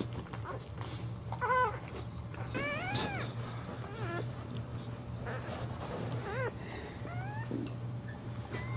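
Newborn boxer puppy squealing: about half a dozen short, high cries, several arching up and then down in pitch, and a few rising whines near the end.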